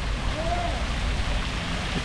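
Fountain jets splashing into a stone basin: a steady hiss of falling spray, with a faint voice briefly about half a second in.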